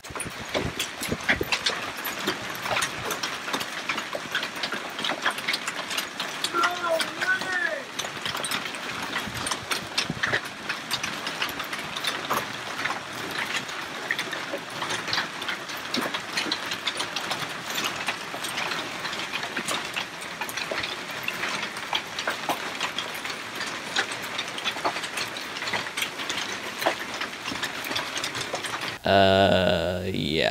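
Heavy hail pelting down: a dense, steady clatter of countless hailstones striking the ground and splashing into a pool, over an even hiss of the driving storm.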